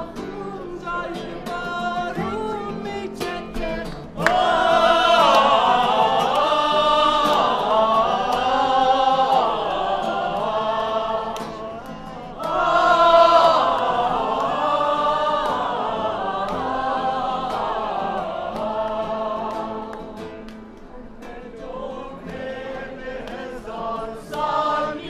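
A choir of women's and men's voices singing a song together, swelling louder about four seconds in and again about halfway through, with a brief dip between and softer singing near the end.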